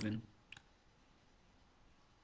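A single computer mouse click, short and sharp, about half a second in: the Submit button being clicked. Faint room tone follows.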